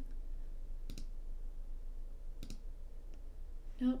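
Two short, sharp computer mouse clicks about a second and a half apart, over a faint steady low hum.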